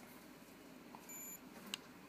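Handheld magnetic-induction coating thickness gauge giving one short, faint, high beep as it registers a reading, followed shortly by a light click.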